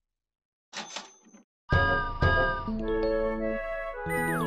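Cartoon sound effects and music: a short rattling effect about a second in, then two bright ringing hits about half a second apart, followed by a few held musical notes.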